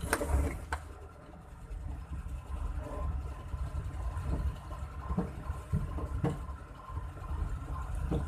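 Car moving slowly over a rough concrete road, heard from inside the cabin: a steady low engine and road noise with a few dull knocks from the bumps in the middle.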